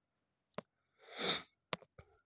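A person sniffing, a short breath in through the nose, a little after one second, with a few faint short clicks before and after it.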